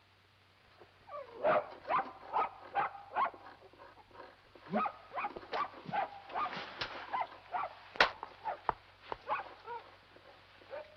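A dog barking and whining, a run of short, irregular yelps, several a second, starting about a second in, with a sharp knock about eight seconds in.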